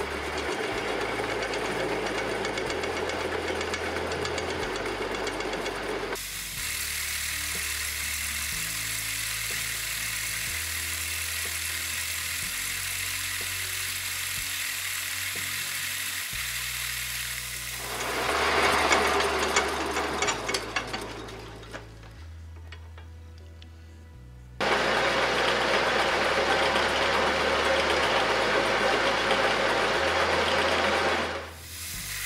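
Atlas metal lathe turning hex stock, its cutting noise jumping abruptly between loud and quieter stretches several times, under background music with a bass line that steps every second or two.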